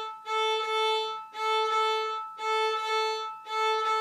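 Violin played with hooked bow-strokes in 6/8 time on a single repeated note: each bow stroke holds a longer crotchet and a short quaver, parted by a slight stop of the bow on the string. The strokes run about one a second, alternating bow direction.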